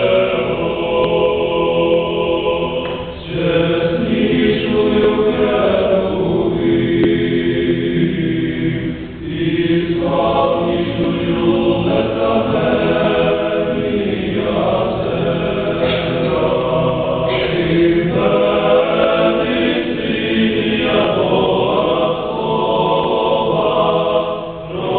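A seminary choir singing Eastern-rite (Byzantine) sacred chant unaccompanied in several voice parts, in long held phrases with two brief breaks between them.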